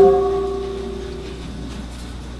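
A Buddhist ritual bell struck once between chanted verses, its ring fading away over about a second and a half.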